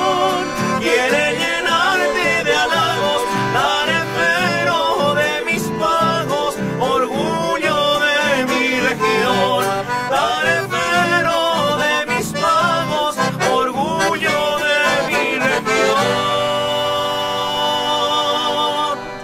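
Live folk song on a Piermaria button accordion and acoustic guitar, with male voices singing over a steady strummed rhythm. About sixteen seconds in, the music settles on a final held chord that rings out as the song ends.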